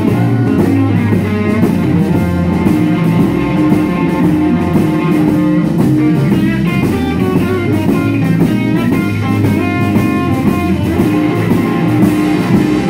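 Live rock band playing loud, with electric guitars, bass guitar and drum kit in a steady beat and no singing.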